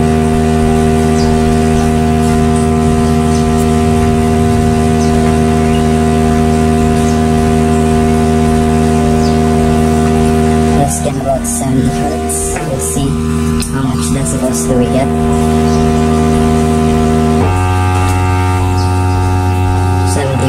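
Bare woofer driver playing a steady 60 Hz sine test tone from a tone-generator app through a small amplifier, a loud low hum. About 17 seconds in it steps up to a 70 Hz tone. The tones are being played to measure the driver's loudness at each frequency and find its bass resonant frequency.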